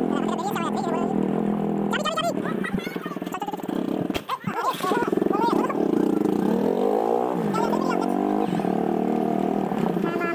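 Motorcycle engine running while it is ridden, with people's voices over it. The loudness dips briefly about four seconds in, and the engine note sweeps up and down again near the eight-second mark.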